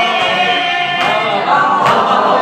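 A group of voices chanting a noha (Muharram lament) together, with sharp chest-beating slaps (matam) keeping the beat, two of them in the second half.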